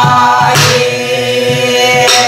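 A woman singing Korean Namdo folk song (namdo minyo), holding one long note with a slight waver in pitch.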